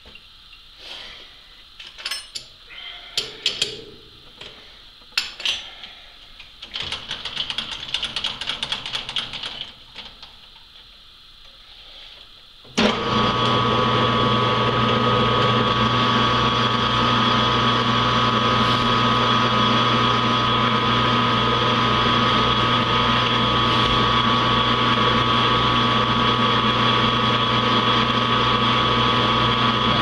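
A few clicks and knocks of hands and tools working on a metal lathe. About 13 s in, the lathe's motor and spindle start suddenly and then run steadily, a loud even hum with a constant whine.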